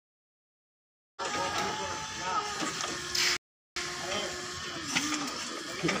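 Silent for about the first second, then people talking over the steady hum of a running forklift. A short hiss comes just past three seconds in, followed by a brief cut to silence.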